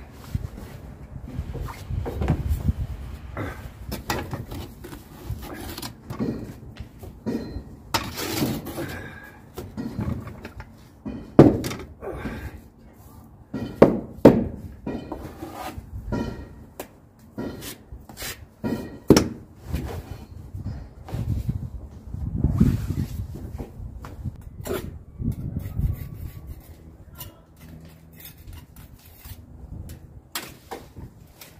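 Irregular knocks, taps and clunks from hand work on a brick wall on scaffolding, with a few sharper knocks in the middle, over a low rumble.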